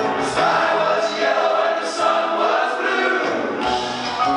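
Live rock band music, with several voices singing together over sustained instruments. The bass and drums drop out about half a second in and come back in near the end.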